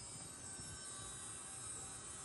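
Faint, steady background hiss with a thin hum and no distinct event: room tone.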